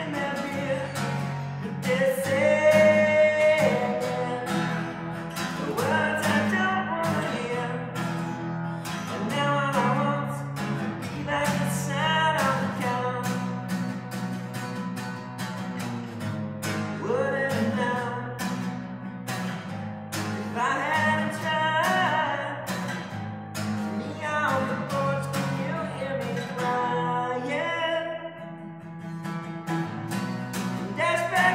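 A man singing in phrases with gaps between them, accompanying himself on a strummed acoustic guitar that keeps a steady rhythm throughout.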